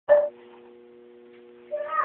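A toddler's short high-pitched vocal sound right at the start and another rising one near the end, with a faint steady electrical hum between.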